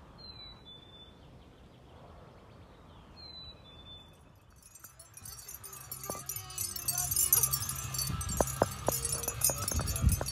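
Quiet outdoor ambience with a bird chirping twice, short falling notes. After a cut, wind buffets the microphone with a low rumble and a high crackling hiss, broken by several sharp knocks and handling clicks.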